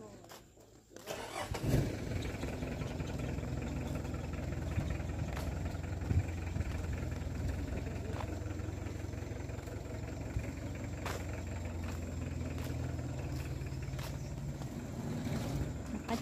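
An engine starts about a second in and then runs steadily.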